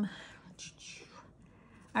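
Faint, soft scratching of a felt-tip alcohol marker stroking across paper.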